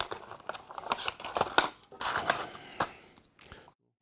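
Clear plastic blister packaging crackling and crinkling as it is pulled off the cardboard backing card and the action figure is taken out of it, a run of irregular rustles and sharp clicks.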